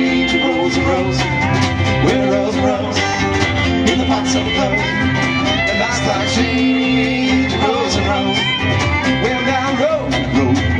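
A live bluegrass and swing band playing: fiddle, steel guitar, two acoustic guitars and an upright bass, with the bass steady underneath and sliding melody lines on top.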